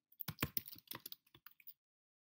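Typing on a computer keyboard: a quick run of keystroke clicks that stops shortly before the end.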